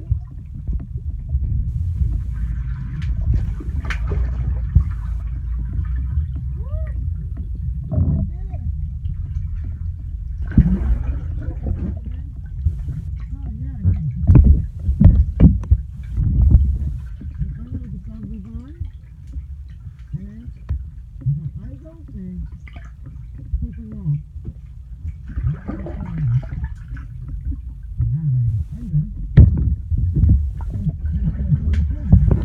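Muffled underwater sound picked up by a submerged phone microphone: a steady low rumble of moving water, with bubbly gurgles and swishes coming and going, and a few louder surges in the middle.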